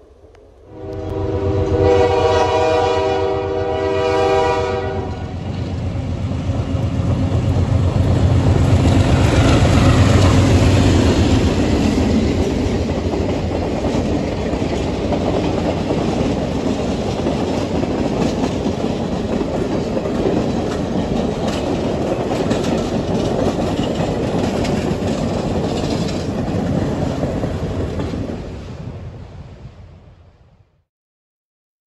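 A passenger train led by a pair of Montreal Locomotive Works diesel locomotives sounds a long multi-note horn about a second in, lasting some four seconds. The locomotives then pass with a deep diesel rumble that is loudest around ten seconds in, followed by the coaches clattering over the rail joints, fading away near the end.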